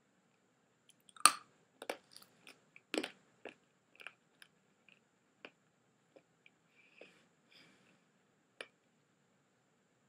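Hard Polo mints being crunched and chewed in a person's mouth: irregular sharp crunches, the loudest about a second and three seconds in, growing sparser and fainter in the second half.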